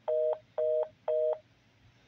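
Telephone fast busy tone: a two-tone beep repeating about twice a second. Three beeps fall here and stop about one and a half seconds in. It is the signal that the call has ended and the line is dead.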